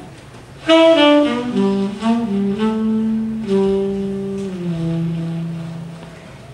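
Saxophone playing a slow jazz phrase of held notes that steps down in pitch, coming in about a second in and fading away near the end, over a quiet low backing.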